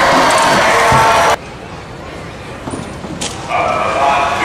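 Loud amplified voice over a public-address system. It cuts off suddenly about a second and a half in, leaving a much quieter stretch, and comes back shortly before the end.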